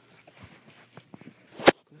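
A single loud, sharp snap near the end, with a few faint clicks before it.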